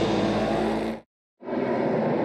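Stock car engine noise from the race broadcast, with a trace of music, cuts off abruptly about a second in. A brief gap of dead silence follows where the commercial break was edited out, then the engine noise of the V8 stock cars circling the track comes back at the same level.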